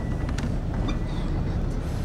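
Car in motion heard from inside the cabin: a steady low rumble of engine and road noise, with a few faint clicks.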